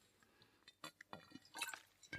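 Near silence in a pause between spoken sentences, with a few faint short mouth clicks and lip noises from the narrator in the second half.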